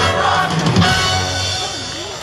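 Live band with drum kit playing the closing bars of an up-tempo song, with a last hard hit just under a second in, after which the sound dies away.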